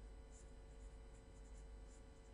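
Faint scratching of a pen writing on paper, over a steady low hum.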